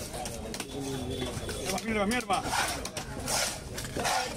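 Voices talking, with a bird cooing in the background and a short hissing noise a little past halfway.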